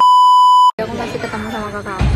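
Steady high-pitched test-tone beep that goes with a TV colour-bars screen, lasting under a second and cutting off abruptly.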